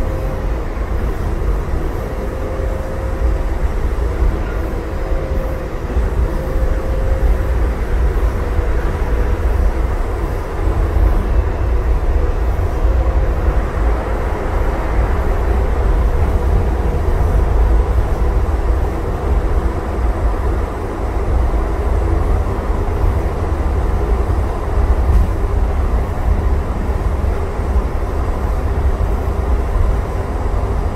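Interior of a Calgary light-rail car in motion: a steady low rumble of wheels and running gear, with a faint whine that comes and goes during the first half.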